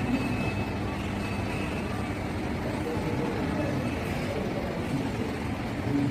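Steady low rumble of room ambience in a large indoor shopping-centre hall, even in level with no distinct events.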